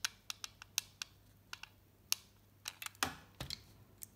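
Scattered light clicks and taps from handling a hot glue gun while gluing the edges of a glitter foam flower, with one louder knock and rustle about three seconds in.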